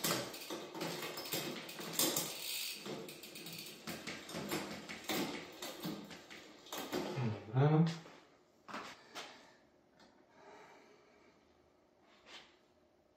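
Bicycle drivetrain turned by hand: the chain runs over the cassette and through the rear derailleur with a continuous rattle and clicking for about eight seconds, while gears are shifted back the other way. A short grunt-like vocal sound comes near the end of the rattling, and then only a few separate clicks.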